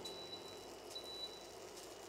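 Faint high-pitched whine from a portable induction hob heating a frying pan with butter in it. The whine comes in two stretches of about half a second each, over a low hiss.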